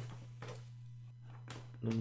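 Hands quietly handling a cardboard product box, with a short sharp tap about one and a half seconds in, over a steady low hum.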